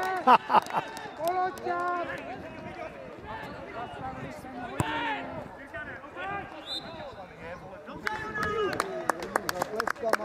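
Men's voices calling out across a football pitch, heard from the touchline, with a few sharp knocks, one about five seconds in and several near the end.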